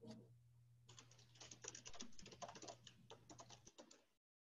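Faint typing on a computer keyboard through a video-call microphone: a quick, uneven run of key clicks starting about a second in, over a low steady hum that cuts out near the end.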